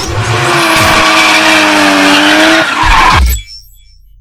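Car tyres squealing in a loud, steady burnout lasting a little over three seconds, with a slight fall in pitch, then cutting off suddenly.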